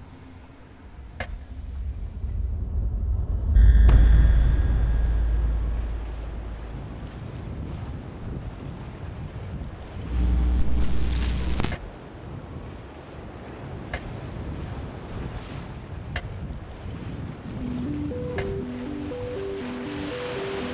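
Ocean surf washing in as a steady rushing noise, overlaid with a deep cinematic boom about four seconds in and a harsh noisy burst with a low rumble around ten to twelve seconds. A soft melody of held notes comes in near the end.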